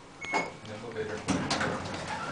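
Brief speech from a person in an elevator car, in short phrases, with nothing else clearly standing out.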